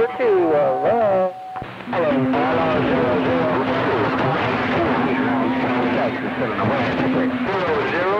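CB radio speaker receiving skip signals: a voice with a steady whistle under it cuts off about a second and a half in, then garbled voices from stations transmitting over one another come through, with a lower steady tone beneath them that stops shortly before the end.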